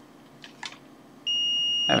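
Fluke 17B+ digital multimeter's continuity beeper sounding one steady high-pitched tone when its probe tips are touched together, starting a little past halfway; the beep signals a closed circuit. A couple of faint clicks from the probe tips come just before it.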